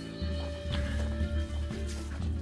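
Background music: a held note over a steady low bass.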